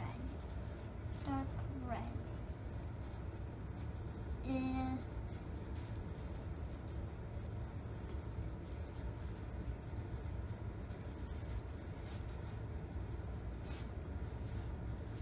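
A steady low hum, with short vocal sounds from a person about a second and a half in and a single held hummed note of about half a second near five seconds. A couple of faint clicks near the end.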